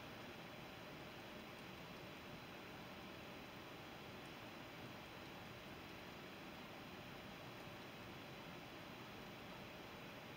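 Near silence: a steady faint hiss of room tone.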